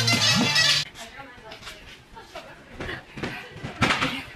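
Background music with a steady beat that stops suddenly just under a second in, followed by the quieter sound of a large gym hall with faint voices, a few light knocks and one sharp thump near the end.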